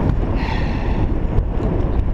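Wind buffeting the camera's microphone as the bicycle rolls along, a steady low rumble, with a short breathy hiss about half a second in.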